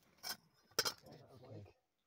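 Hand digging in rocky ground with a hand tool: a brief scrape, then a sharp clink of the tool striking rock a little under a second in, followed by about a second of gritty scraping through loose stones and dirt.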